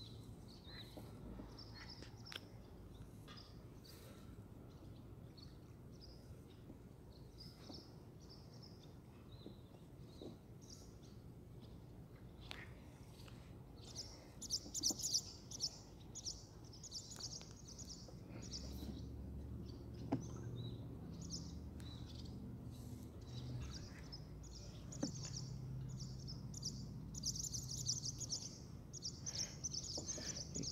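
Birds chirping outdoors: bursts of quick, high calls that start about halfway through and carry on to the end, over a low steady outdoor rumble that grows a little louder past the middle.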